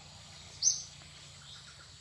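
A single short, high-pitched bird call about half a second in, the loudest sound here, over a faint steady hum of forest background.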